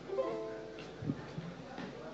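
A single chord strummed on a small plucked string instrument, ringing briefly and fading, followed about a second later by a couple of soft low knocks.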